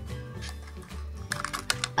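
Background music with a steady low bass line, and the thin foil wrapper of a Kinder Surprise chocolate egg crinkling as fingers peel it off, in quick crackles mostly in the second half.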